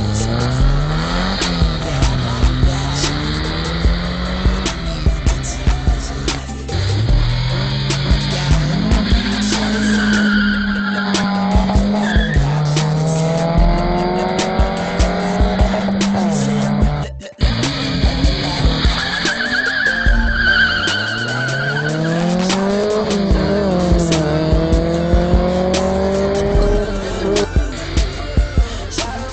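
Car engines revving hard and accelerating, the pitch climbing and then dropping back again and again, with tyre squeal around the middle, over music with a steady beat.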